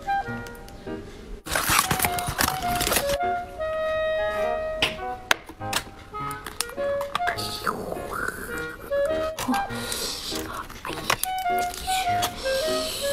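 Background music, a simple chiming melody of single held notes, with several short bursts of rustling and crinkling from handling the food and its packaging.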